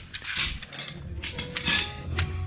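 Loose chrome car trim strips clinking and rattling against each other as a bundle is handled, with a few short metallic rings in the second half.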